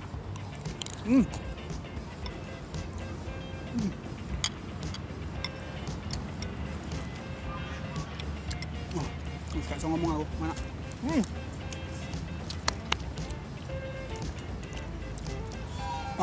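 Background music playing at a low level, with a short "hmm" about a second in, a few brief vocal murmurs later, and scattered faint clicks.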